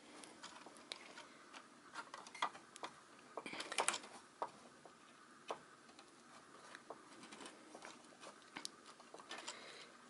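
Faint scattered clicks and light scrapes of OO gauge flexible model railway track being pushed back together by hand, the rail ends working into the rail joiners (fishplates), with a quick run of clicks a few seconds in.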